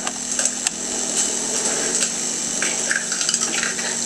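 Kitchen handling sounds as an egg is cracked and emptied into a plastic bowl, with a few light clicks over a steady hiss and low hum.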